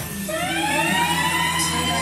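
Siren sound effect from the DJ's track through the club PA, rising in pitch for about a second and then holding steady, over a sustained low bass.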